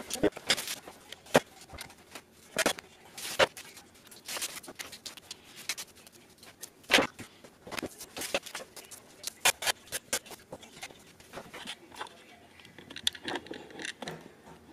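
Bass effects pedals being handled and set down on a pedalboard: scattered sharp clacks and knocks at irregular intervals.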